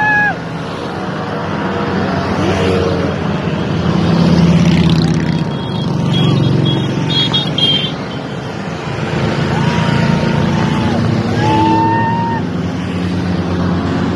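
Paramotor engines droning overhead, swelling louder about four to seven seconds in as the aircraft pass, over a crowd's voices, with several long horn-like toots that slide in pitch at their ends.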